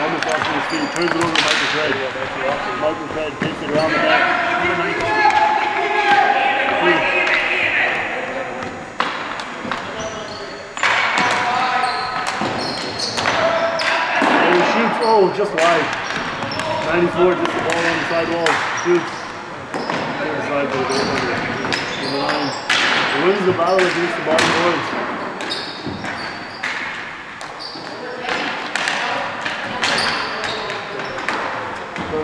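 Ball hockey being played on a gym's hardwood floor: sharp, irregular knocks of sticks and ball against the floor and boards, echoing in the large hall. Voices talk and call throughout.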